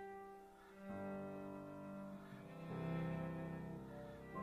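Cello bowed in sustained notes with piano accompaniment, the notes changing about a second in and again near three seconds, where the music is loudest.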